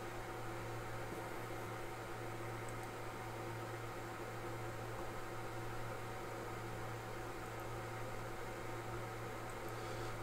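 Steady low hum with a faint even hiss: room tone, with no starts, stops or knocks.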